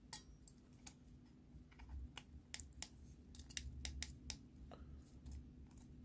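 Faint, irregular small clicks and taps of a plastic remote control housing and its parts being handled and fitted back together.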